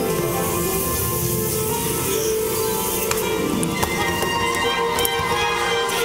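Live school pit orchestra playing held, sustained chords as underscoring for the stage musical.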